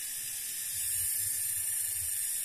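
Steady high-pitched drone of cicadas (tongeret), with a faint low rumble underneath.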